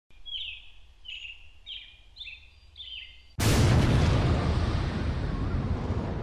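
Title-sequence sound effects: a small bird chirping about five times in short falling chirps, then a sudden loud explosion about three and a half seconds in, whose rumble fades slowly.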